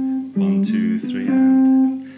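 PRS electric guitar through a VOX AC30 amplifier, picking a short syncopated phrase of single notes. A held note gives way to a quick group of notes about a third of a second in, and the phrase ends on one note held for about half a second that fades near the end.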